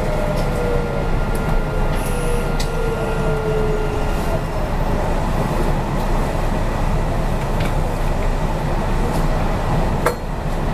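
Kintetsu 5820-series train's Mitsubishi IGBT VVVF inverter and traction motors whining, the tones falling in pitch as the train slows into a station and fading out about four seconds in. A steady rumble of wheels on rail runs beneath.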